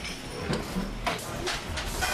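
Busy commercial kitchen: steady hiss of ventilation with several short clinks and clatters of utensils and dishes about a second in and near the end.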